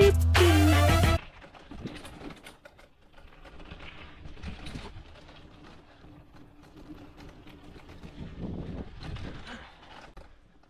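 Music that cuts off suddenly about a second in, followed by the quieter sound of a mountain bike rolling down a dirt trail: tyre noise on the dirt and small irregular rattles and clicks from the bike.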